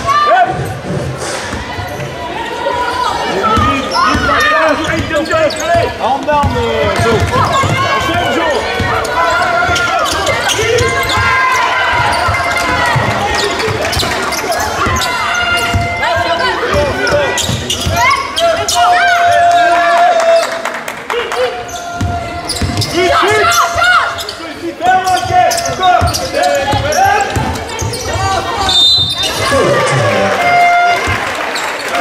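Live basketball game in a large sports hall: many voices from the crowd and benches calling out over each other, with the ball bouncing on the hardwood court.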